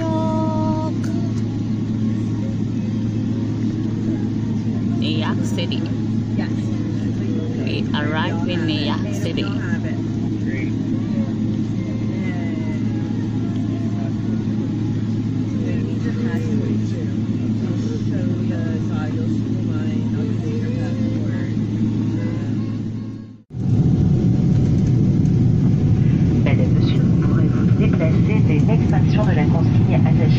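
Jet airliner cabin noise: a steady engine hum while the plane taxis, with faint voices in the cabin. About 23 seconds in, a cut brings a louder, deeper rumble of the cabin in flight.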